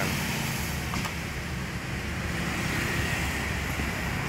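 Steady low rumble of road traffic, with a faint click about a second in.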